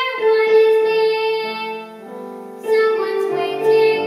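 A young girl singing a solo song with piano accompaniment, holding long notes. Her voice breaks off for a moment about halfway while the piano carries on, then comes back in.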